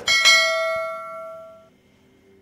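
A bell sound effect, struck once and ringing out, fading over about a second and a half: the notification-bell chime of a subscribe-button animation.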